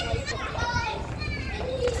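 Indistinct talking in a child's voice over a low, steady rumble.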